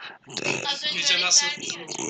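A man groaning in a drawn-out, wavering voice, imitating the moan of a sick person.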